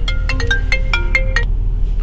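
Mobile phone ringtone: a quick melody of short, bright notes that stops about one and a half seconds in, over the low hum of the car cabin.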